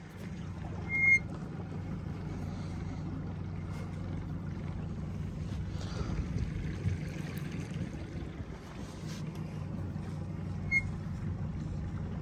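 Small boat's motor running steadily at a low, even pitch, with two short high chirps, one about a second in and one near the end.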